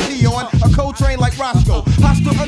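1990s boom-bap hip hop track with a male rapper rhyming over the beat; the low bass drops out for most of these two seconds and comes back near the end.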